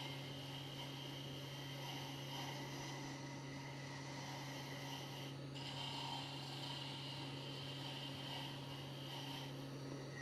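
Wood lathe running with a steady motor hum while a small spindle is cut lightly with a carbide pin-turning tool, giving a soft scraping hiss. The hiss breaks off briefly a little past halfway.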